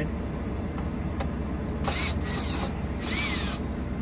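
Two short scraping, mechanical bursts, about half a second each and a second apart, as metal brackets are worked loose from the van's interior wall; the second carries a brief squeal that rises and falls. A steady low hum runs underneath.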